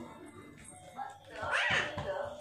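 A young child's short, high-pitched squeal that rises and then falls in pitch, near the end.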